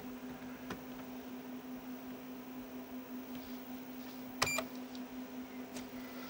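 A steady low electrical hum from the videotape editing equipment, with one brief click about four and a half seconds in.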